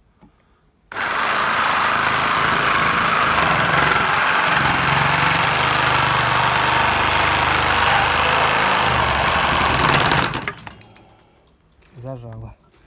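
Procraft electric reciprocating saw with a Bosch metal-cutting blade sawing through a rusty steel pipe. It starts about a second in, runs loud and steady for about nine seconds, then stops suddenly.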